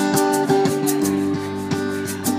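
A live band playing an instrumental phrase between vocal lines: an acoustic guitar strummed and picked, backed by an electric guitar, with a steady high ticking beat from light percussion.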